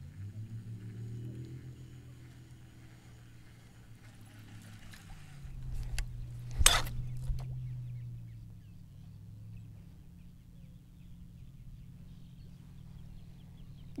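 Low, steady hum of the boat's electric trolling motor, shifting pitch about five seconds in and dying away near the ten-second mark. About seven seconds in comes a single sharp crack as the spinnerbait slams into the camera, breaking the spinner off the bait.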